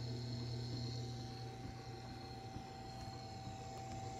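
Tormek T3 low-speed wet sharpening machine running with a worn SG250 grinding stone turning through the water in its trough. It gives a steady, quiet motor hum with faint higher steady tones over it.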